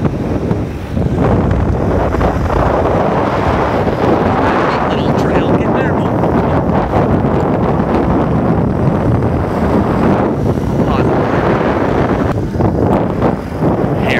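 Heavy, steady wind noise on the microphone of a moped moving at riding speed, with the moped's small engine running underneath.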